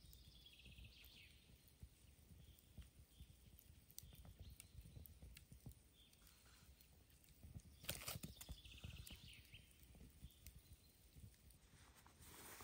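Faint wood fire crackling in a split-log stove, with scattered small pops and a louder burst of crackles about eight seconds in. A songbird sings a short trilled phrase near the start and again about nine seconds in.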